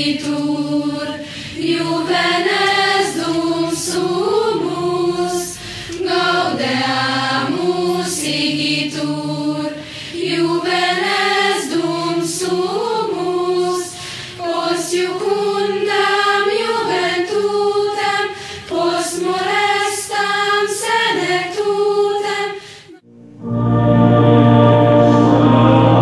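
A choir singing a slow song in phrases a couple of seconds long. The singing breaks off about a second before the end.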